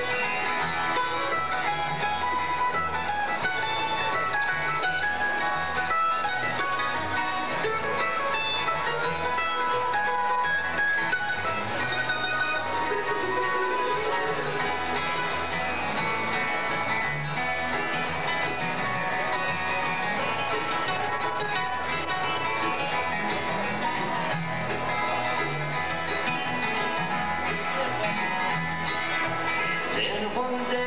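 A live acoustic bluegrass band plays an instrumental passage at a steady, even level, with fiddle, mandolin, two acoustic flat-top guitars and an upright bass.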